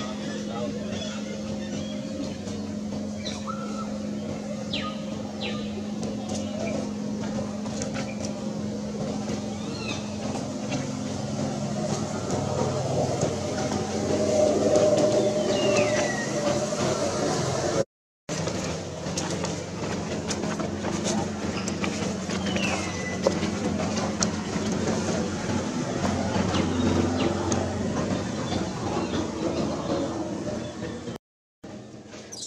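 Outdoor background of a steady low hum with distant voices under it, and a few short high falling squeaks now and then. The sound cuts out for a moment about two-thirds of the way through.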